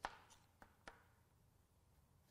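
Near silence broken by a few soft knife cuts through carrot onto a cutting board: a sharp tap at the very start, then two faint ticks about half a second and just under a second in.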